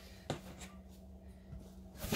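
Quiet room tone with a steady low hum, a soft click about a third of a second in and a few faint small handling sounds.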